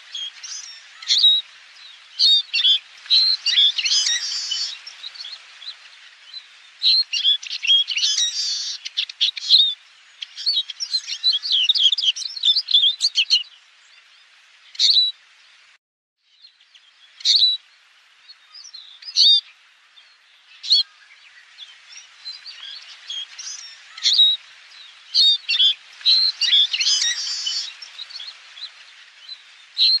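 Eurasian siskins singing: bouts of fast, high twittering and chirps broken by short pauses, with a brief gap of silence about halfway through.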